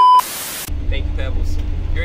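A TV-static glitch transition effect: a short high beep followed by about half a second of static hiss. It then gives way to the steady low rumble of a bus interior with voices.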